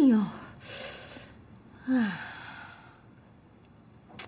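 A woman's exasperated sighs: a falling vocal groan at the start, a breathy exhale just after, and a second, shorter falling sigh about two seconds in.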